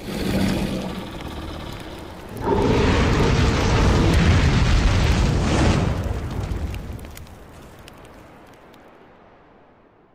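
Cinematic fire-and-explosion sound effect for an animated logo. A swell starts it off, then a loud blast comes about two and a half seconds in, holds for some three seconds and fades away slowly.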